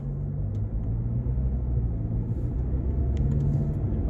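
Low, steady rumble of a car heard from inside its cabin as it pulls slowly forward from a stop to squeeze past parked vehicles.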